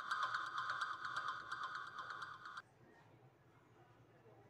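Background music, a held synth-like tone over a fast even ticking beat, fading and then cutting off abruptly about two-thirds of the way through, leaving near silence.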